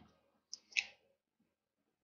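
Two short, faint clicks about a quarter of a second apart, a little after half a second in.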